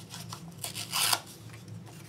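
Scratchy rubbing strokes of a flat paintbrush over the papered collage surface, with one louder rasp about a second in.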